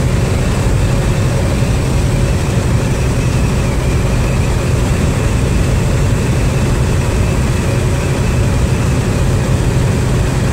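Steady drone of a semi-truck's diesel engine and road noise heard inside the cab while driving, deep and even, with no change in pitch.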